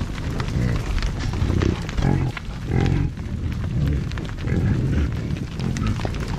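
A herd of American bison moving past close to the microphone: low grunting calls from the animals about once a second, over many short thuds and ticks from hooves on dry grass.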